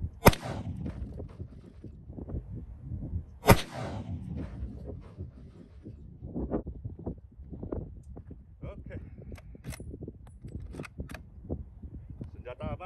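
Two .30-06 rifle shots about three seconds apart, each a sharp crack with a short echo trailing off, over wind rumble on the microphone. A few faint clicks follow near the end.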